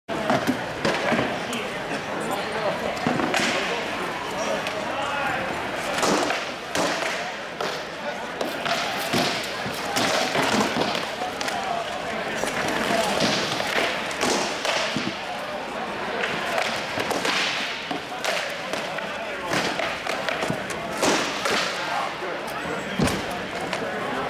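Irregular sharp blows of weapons striking shields and armor in armored sword-and-shield combat, echoing in a large hall, over a bed of background chatter.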